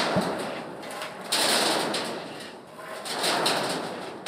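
Pitchfork scooping and tossing leafy olive branches off a truck bed onto an intake grate, heard as three rustling, scraping swells about a second and a half apart.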